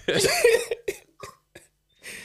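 A man laughing hard and breaking into a cough, followed by a few short breathy gasps. The sound then cuts out abruptly about a second and a half in.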